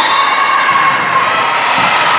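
Young volleyball players and spectators cheering and shouting in a gym as a point is won, the high voices carrying steadily.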